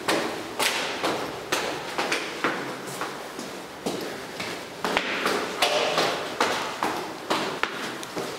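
Footsteps going down a flight of stairs, a steady tread of about two steps a second.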